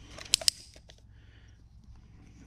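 Two sharp clicks close together, a moment apart, as hands handle and turn a stripped .22 rifle receiver, followed by faint handling rustle.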